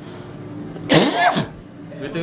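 A man coughs once, a single short burst about a second in, between stretches of quiet.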